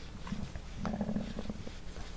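Faint rustle and light scratching of chunky acrylic yarn being drawn through loops on an aluminium crochet hook while a treble stitch is worked. About a second in there is a brief low hum.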